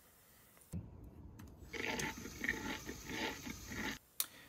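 A small LEGO WeDo motor runs briefly as the alligator's jaw moves, then the laptop plays the WeDo software's "Crunch" sound effect, a chewing-like crunching that lasts about two seconds.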